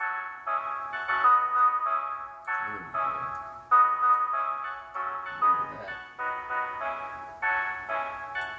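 A beat made on an Akai MPC playing back: a repeating melody of short pitched keyboard notes with little bass, while it is being cleaned up with subtractive EQ.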